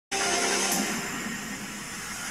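Electronic intro sound effect: a sustained synthesized drone of several steady tones that starts abruptly and eases off slightly, leading into the channel's intro music.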